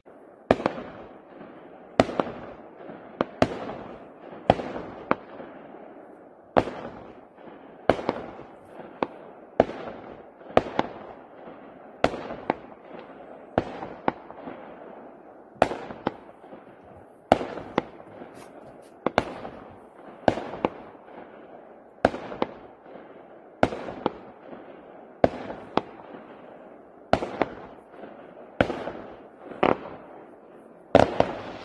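Aerial fireworks going off: a long irregular series of sharp bangs, about one a second, each trailing off in an echo.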